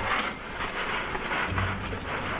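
Scuffling and scraping as a trapped badger shifts against the brick walls of a drain, with rustling close to the microphone.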